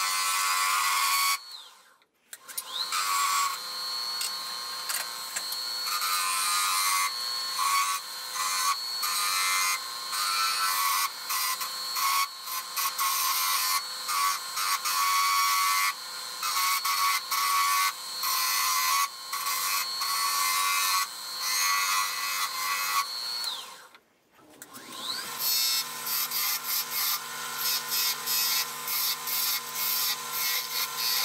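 Wood lathe running with a steady high whine while a turning tool cuts the spinning wooden spatula blank, giving a run of scraping, chattering cuts. Twice the sound briefly drops away, the whine falling before each break and climbing again after.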